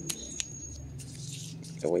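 Lemon tree leaves being snapped off a branch by hand: two small snaps in the first half second, then a brief rustle of leaves about a second in, over a faint steady hum.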